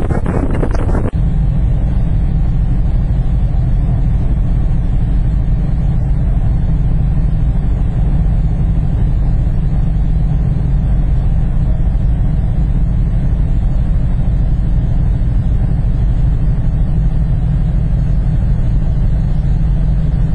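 Steady, loud low rumble of a large ferry's engines heard from the open deck at sea. For about the first second, wind gusts buffet the microphone before it gives way to the even drone.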